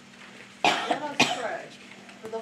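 A person coughing twice, the second cough about half a second after the first.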